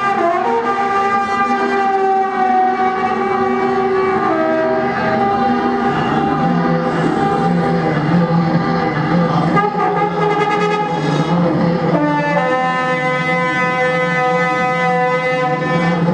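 Experimental improvised music: trumpet and a small electronic keyboard holding long, overlapping sustained tones that blend into a dense drone. A low tone comes in about six seconds in, and a new cluster of higher tones about twelve seconds in.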